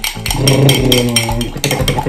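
Metal fork beating instant coffee, sugar and water in a small glass, ticking rapidly and evenly against the glass, several clinks a second. A low voice hums or groans briefly in the middle.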